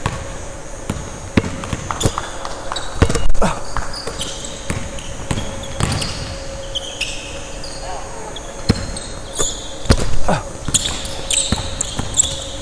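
Basketballs bouncing on a hardwood gym floor, with a series of sharp bounces and the loudest about three seconds in, and short high-pitched squeaks of sneakers on the hardwood as players cut and slide.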